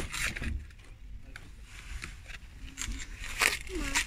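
Clear plastic product boxes rustling and scraping as they are handled on a shop shelf, with short crackles in the first second and again near the end, under faint voices.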